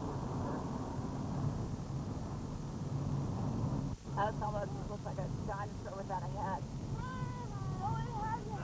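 Steady low drone of the motorhome's engine and tyres, heard from inside the cabin while it drives. About halfway the sound drops out for an instant. Over the second half a string of short, high, wavering vocal sounds runs over the drone.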